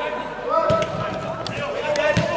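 Football being kicked on artificial turf in a large indoor sports hall: a dull thud about two-thirds of a second in, followed by a few sharper, shorter knocks, with the hall's echo behind them.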